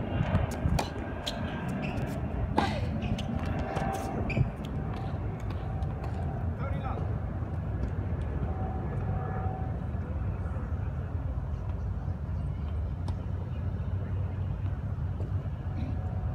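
A few sharp tennis-ball strikes on an outdoor hard court in the first few seconds, over a steady low rumble.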